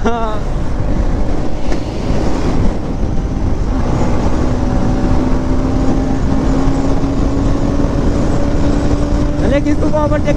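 Bajaj Pulsar 200's single-cylinder engine pulling hard at highway speed, its note climbing slowly as the bike accelerates. Heavy wind rush over the microphone.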